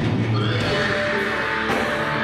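A live rock band playing loudly, with distorted guitar and drums. A short, high rising squeal comes about half a second in.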